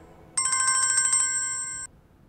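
Mobile phone ringing: one electronic ring about a second and a half long, a fast warble that settles into a steady tone before cutting off sharply.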